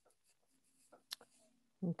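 Near-silent pause on a video-call audio feed, broken by one faint click about a second in; a voice starts speaking near the end.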